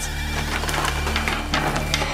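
Irregular clanking and rattling of a heavy metal chain against a wire-mesh cage gate as the gate is chained shut, over a low droning background music.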